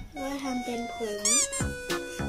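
Background music whose beat drops out briefly, replaced by a squeaky, voice-like sound that slides up and down in pitch with one rising-and-falling swoop; the beat comes back near the end.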